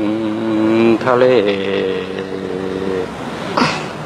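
A man singing in a slow, chant-like way, holding two long steady notes, the second lasting about two seconds, with a short breathy rush near the end.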